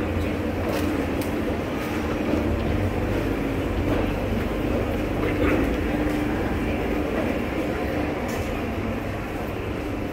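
Shopping mall interior ambience: a steady low hum and rumble under indistinct background chatter of shoppers.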